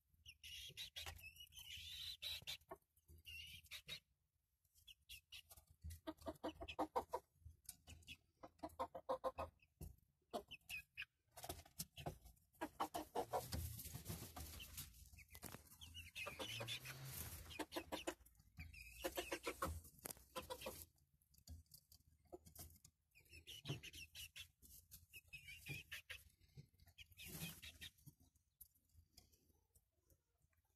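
Domestic hens clucking softly in several short bouts, with light pecking and scratching clicks in wood-shaving litter between the calls.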